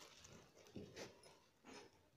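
Near silence, with a few faint, soft rustles of plastic wire strips being handled.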